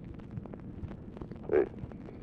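Steady hiss and crackle of an old Dictabelt telephone-call recording in a pause between words, with frequent small clicks. A man says "Boy" near the end.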